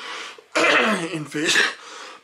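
A man clearing his throat loudly, in one rough burst of about a second starting about half a second in.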